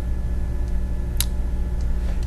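A steady low hum with one sharp click a little past a second in.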